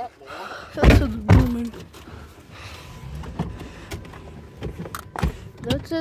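Two loud thumps about a second in, over a low steady rumble inside a car, with brief bits of a child's voice and a few small knocks later on.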